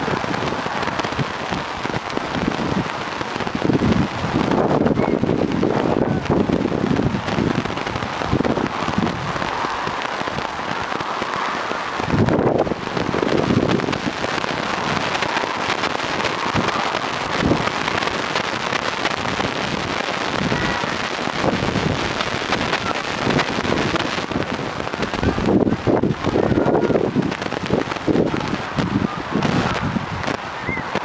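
Steady wind rumble and buffeting on an outdoor camera microphone, with faint shouts from the pitch coming through now and then.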